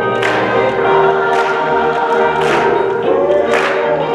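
Choir singing in a church, accompanied by a hollow-body electric guitar.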